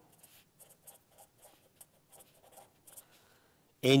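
Felt-tip marker writing block letters on a paper legal pad: a run of faint, short, scratchy strokes.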